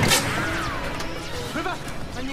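Dramatic soundtrack score with a sudden crash-like hit at the start and a falling tone after it, then a short voice near the end.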